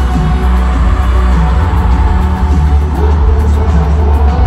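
Live pop band music played over a stadium PA, heard from the stands, loud with a heavy bass.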